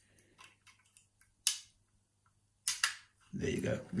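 Bent-wire picks scraping and ticking inside a vintage four-lever mortice lock as its levers are worked under tension, with two sharp metallic clicks about a second and a half and nearly three seconds in, just before the lock gives.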